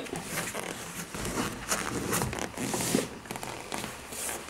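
Close, scratchy rustling and scuffing of a pet's fur and a hand moving against the microphone, with a few brief louder rasps.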